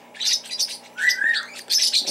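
Small bird chirping: a run of quick high chirps with one short whistled note about a second in, over a faint steady hum.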